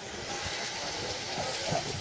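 Steady outdoor hiss with an irregular low rumble of wind on the microphone, and faint voices in the distance.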